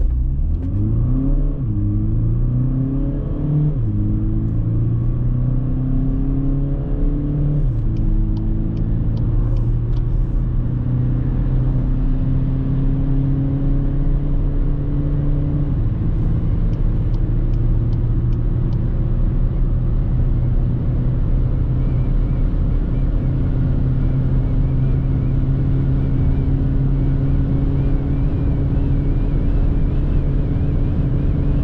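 The four-cylinder turbodiesel of a 2021 VW Passat 2.0 TDI (122 hp), heard from inside the cabin as the car accelerates through the gears. The engine note climbs and drops with four upshifts in the first half, then rises slowly in the top gear. Road and wind noise run underneath.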